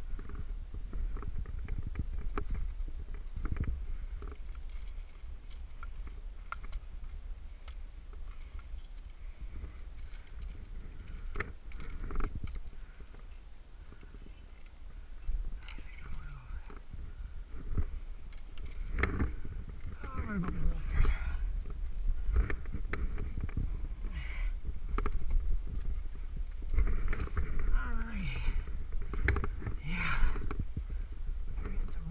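A climber's breathing and short wordless vocal sounds while climbing a granite crack, with scattered clicks and clinks of climbing gear (nuts on a carabiner) being handled, over a steady low rumble on the microphone. The vocal sounds come mostly in the second half.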